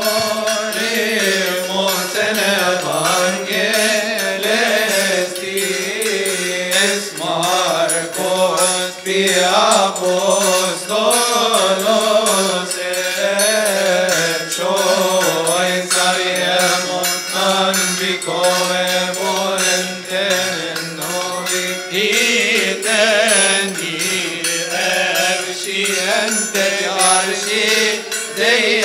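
Male deacons chanting a Coptic hymn together in long, winding melodic lines, with a steady run of sharp strikes over the voices.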